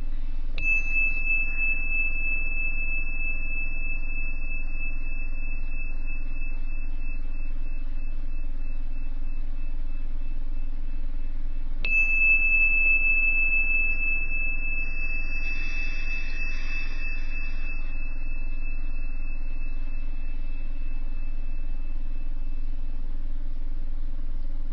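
A small bell or chime struck twice, about eleven seconds apart; each strike rings one high, pure tone that fades slowly over roughly ten seconds. A steady low room hum runs underneath.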